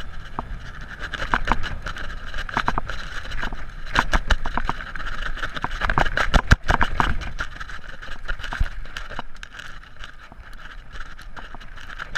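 Mountain bike rattling and clattering down a rough, rocky trail, with many sharp knocks from the wheels hitting rocks and the bike's parts shaking. The knocks come thickest in the middle of the stretch and ease off toward the end, over a steady low rumble.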